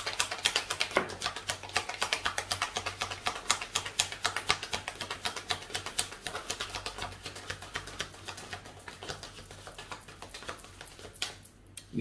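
A deck of tarot cards being shuffled by hand: a rapid, steady run of small card clicks that thins out and stops near the end.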